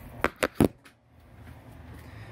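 Three quick knocks in the first moment, each about a fifth of a second apart, the last the loudest, then only low background noise.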